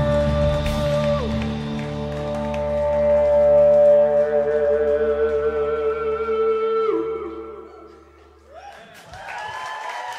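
Live rock band of electric bass, keyboards and electric guitar holding a long final chord, with notes sliding down as it closes. The chord dies away about eight seconds in, and the audience starts clapping and cheering near the end.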